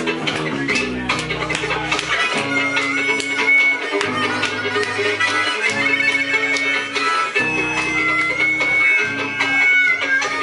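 Live folk trio playing an instrumental passage on fiddle, acoustic guitar and bass guitar. Long held high notes ride over a bass line whose notes change every second or so.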